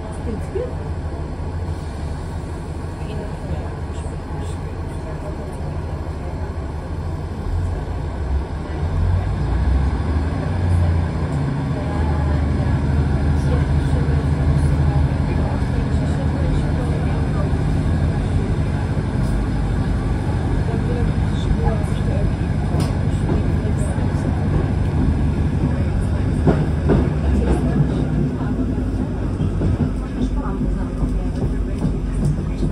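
Passenger train heard from inside the carriage: a low, steady engine drone while it stands at the platform, growing louder about ten seconds in as the train pulls away and gathers speed.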